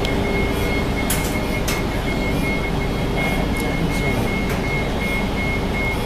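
Inside a moving city bus: steady engine and road rumble with a thin, steady high-pitched whine and a few light rattling clicks.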